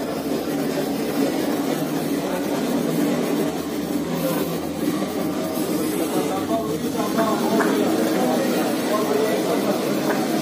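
Steady murmur of a crowd talking in a large hall, with indistinct voices and no clear words.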